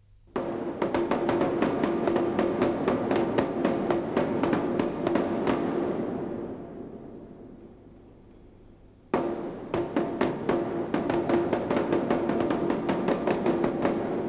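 Large nagara kettledrum beaten with two sticks in a quick, even roll of about five strikes a second over a steady drum pitch. The drumming fades away past the middle, then starts again abruptly about nine seconds in.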